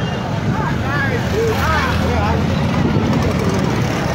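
Several motorcycle engines running along a crowded street, with a crowd's voices and a few raised calls between about one and two seconds in.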